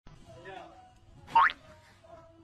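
A short whistle-like sound effect that sweeps sharply upward in pitch about one and a half seconds in, over faint background sound.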